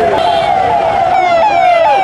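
A loud siren sounding in quick, repeated sweeps, each jumping up in pitch and then sliding down, about two times a second. The pattern becomes steady and clear about a second in.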